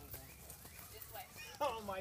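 Horse walking on soft dirt, its hoofbeats faint and irregular. A voice cuts in loudly near the end.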